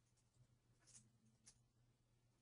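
Near silence: faint room tone with a few faint computer mouse clicks about a second in.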